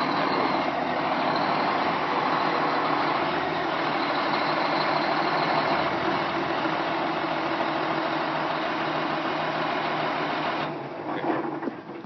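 A 2004 Caterpillar 143H motor grader running at close range: steady diesel engine and machine noise that drops off shortly before the end.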